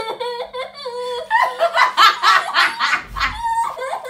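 Two young women laughing hard together: high, sliding squeals of laughter, then a quick run of rhythmic laugh bursts, with a brief low thump near the end.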